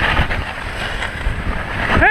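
Wind rushing over the microphone of a camera skiing at speed, mixed with the steady hiss of skis and a rescue toboggan sliding over snow.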